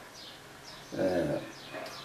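A man says a short, hesitant 'ee' about a second in. Faint high chirps repeat in the background.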